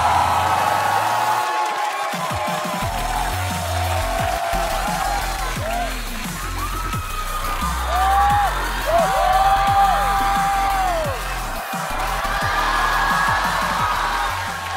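Music with a bass line and a melody of sliding notes, with a studio audience cheering and whooping over it.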